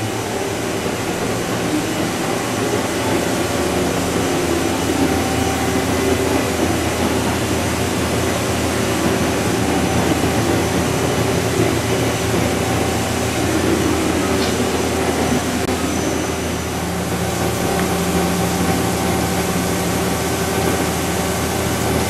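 Leadwell MCH500D horizontal machining center running a machining job: a steady hum of several tones over a noise haze, which shifts slightly about two-thirds of the way through.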